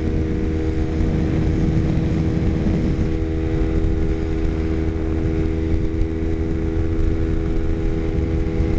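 Kawasaki Ninja 250R's small parallel-twin engine cruising in sixth gear at freeway speed, a steady hum that holds one pitch throughout, over a heavy low rush of wind and road noise.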